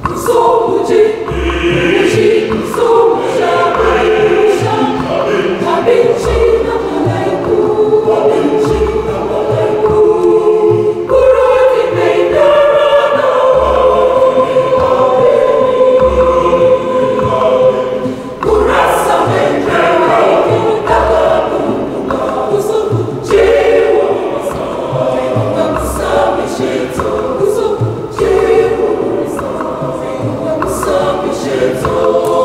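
Church choir of women and men singing a communion song in parts, over a low drum beat that keeps a steady pulse. The singing dips briefly about eighteen seconds in, then continues.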